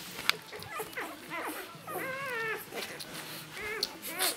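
Newborn Rhodesian Ridgeback puppies squeaking and whining while they nurse: a run of short, high, bending calls, with one longer whine about two seconds in. A single sharp click about a third of a second in.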